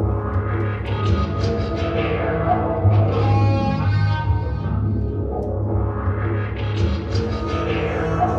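Looped live music: a repeating phrase of strummed Spanish guitar played back from a looping pedal over a steady low drone, the layers cycling every few seconds.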